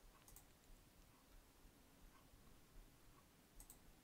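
Near silence with two faint computer mouse clicks, one shortly after the start and one near the end.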